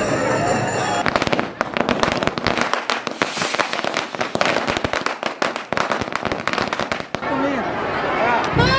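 A string of firecrackers going off in rapid, irregular cracks, starting about a second in and running for about six seconds.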